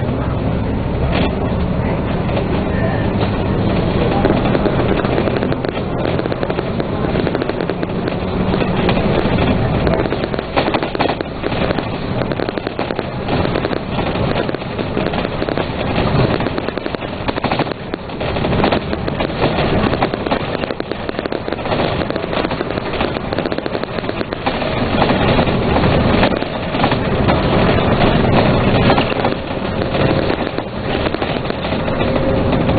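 Dennis Trident double-decker bus in motion, heard from inside: engine and road noise with a dense, constant rattle from the body and fittings. It gets louder near the end.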